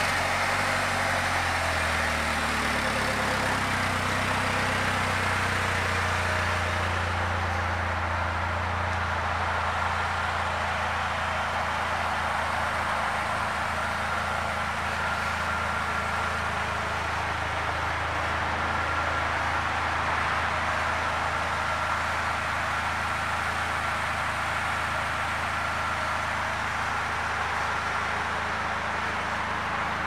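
2019 Polaris Slingshot SL's 2.4-litre four-cylinder engine idling steadily just after being started, its idle easing slightly lower over the first several seconds and then holding even.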